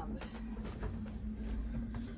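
A steady low hum with rumble beneath it, under faint soft knocks that fit footsteps on the wooden stage boards.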